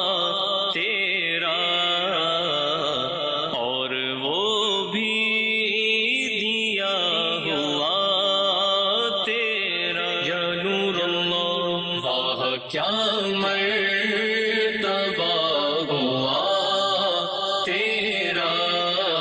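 A man singing a naat, a devotional poem in praise of the Prophet, in a slow melody with long, wavering held notes.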